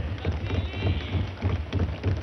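Many hands thumping on wooden assembly desks in quick, irregular succession, with indistinct voices of other members behind.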